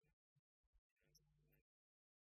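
Near silence: the audio is cut almost to nothing, with only very faint short blips and a faint half-second sound about a second in.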